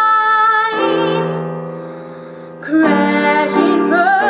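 A young girl singing a pop ballad over her own electronic keyboard playing. In the middle a held keyboard chord fades away for about two seconds, then her voice and the keys come back in strongly near the end.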